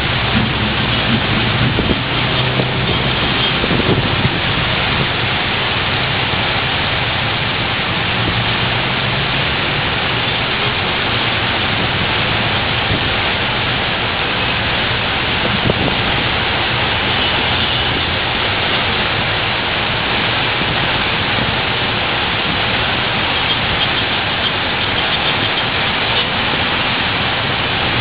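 Heavy tropical downpour: a loud, steady hiss of rain with no let-up, with the low sound of road traffic beneath it, strongest in the first few seconds.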